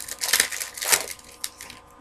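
Rustling and crinkling of foil trading-card pack wrappers and chrome cards being handled, a run of crackly rustles loudest about a third of a second and about a second in.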